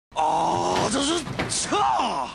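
A person's wordless vocal sounds: a held, pitched tone for most of the first second, then a few short sliding cries that rise and fall in pitch.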